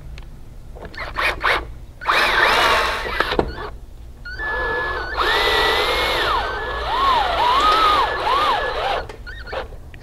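Cordless drill driving 3-inch screws through a metal mounting plate into a wooden door jamb: a few light clicks, a short run of about a second and a half, then a longer run of about four seconds whose whine dips and rises as the screw goes in.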